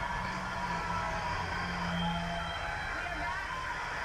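Steady low hum of room noise, with faint voices from a broadcast playing in the background.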